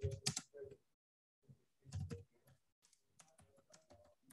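Typing on a computer keyboard: faint, irregular keystroke clicks, with a short break about a second in.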